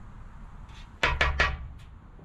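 A scratcher rubbing across a scratch-off lottery ticket in three quick strokes about a second in, with a low thud of the ticket against the surface under it.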